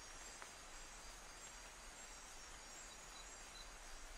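Very faint night rainforest ambience: a low, even hiss with thin, steady high-pitched insect calls and a few brief high chirps.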